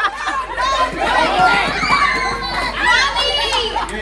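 Several overlapping high-pitched voices of children and adults talking and calling out at once.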